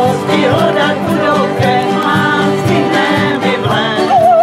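Several acoustic guitars strummed in a steady rhythm while a mixed group of men and women sings a country-style tramp song together.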